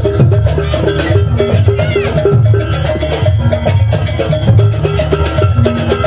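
Jaranan gamelan ensemble playing: steady drumming under a quick, repeating figure of short metallic pitched notes.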